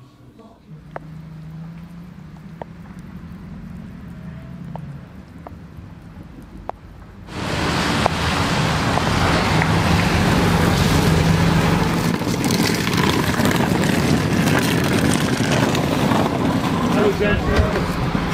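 A low hum for about seven seconds, then a sudden switch to the loud, steady running of a team coach's engine as it pulls up outdoors.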